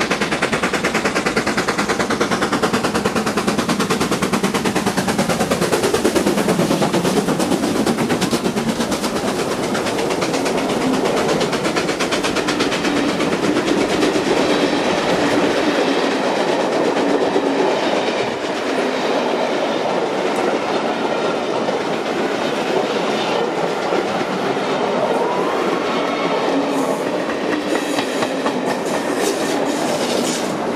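Two 4-6-0 steam locomotives, LNER B1 61306 'Mayflower' and LMS Black Five 44871, working hard up a steep climb. Their rapid exhaust beats pass close by with a falling pitch over the first few seconds. A long train of coaches then rolls past, its wheels clattering over the rail joints.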